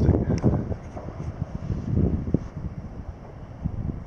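Wind buffeting the microphone: an uneven low rumble in gusts, strongest in the first second, easing off, then swelling again briefly about two seconds in.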